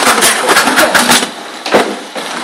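Mini sumo robot's small electric drive motors running as it drives around the ring, with a rapid, irregular clatter of knocks and a brief lull near the end broken by one sharp knock.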